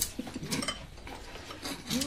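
Eating noises: chopsticks scraping and picking up food from a dish, heard as short scratchy clicks and rustles, busiest in the first half second.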